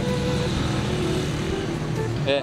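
Street traffic: motor vehicle engines running steadily close by.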